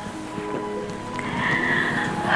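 Soft dramatic background music with long held notes, and a woman's crying wail rising in the second half.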